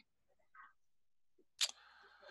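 Near silence, broken about one and a half seconds in by a single short, sharp click, followed by faint hiss.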